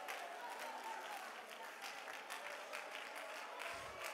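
A congregation praying and reading a verse aloud, many voices blended into a faint murmur, with scattered hand claps throughout.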